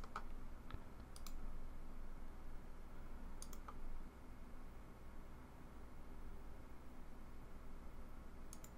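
A few faint, sharp computer mouse clicks, spread over the first half, as parts are picked up, moved and placed in a PCB design program, over faint room tone.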